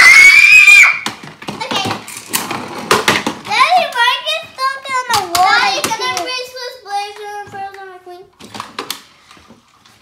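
A child's voice making wordless play sounds: a loud, high, rising squeal at the start, then drawn-out sing-song vocal sounds, mixed with scattered clicks and knocks of plastic toy cars on a wooden table.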